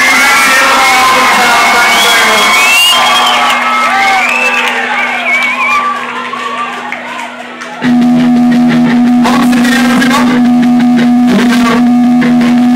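Live rock gig: a crowd cheering and screaming over a held low note from the stage, then about eight seconds in the band starts the song at full volume with electric guitars and drums.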